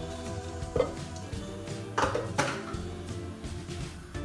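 Background music, with a few light knocks of a plastic tub against a stainless-steel saucepan as a block of butter is tipped into the pan, once about a second in and twice around two seconds in.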